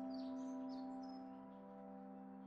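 A soft, sustained music chord, a few held notes, that fades away about a second and a half in, with faint bird chirps above it.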